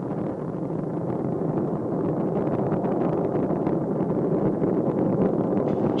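Steady, rushing roar of Space Shuttle Discovery's ascent, from its solid rocket boosters and main engines, heard from the ground and slowly growing louder.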